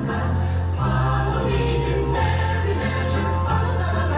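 Choral music: a choir singing over held low notes that change every second or so.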